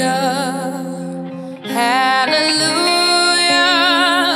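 A woman singing a slow ballad in long, sustained notes with vibrato, over a soft guitar accompaniment. The line breaks off briefly about a second and a half in before the next long note begins.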